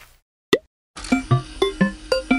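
Cartoon sound effects and jingle: one short rising "bloop" about half a second in, then from about a second in a quick run of bouncy, plucky plopping notes at changing pitches, about four a second.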